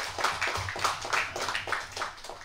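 Audience laughing with scattered clapping, a quick irregular patter.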